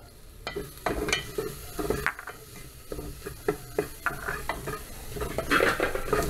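Bacon, garlic and onion sizzling in an open pressure cooker while a spoon stirs them, scraping and knocking against the pot in irregular strokes.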